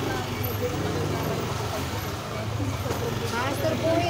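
Motor scooter engine running steadily at low speed, with people's voices around it.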